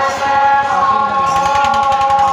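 Santali folk dance song: voices holding a long, wavering melody together over a fast, even drum beat.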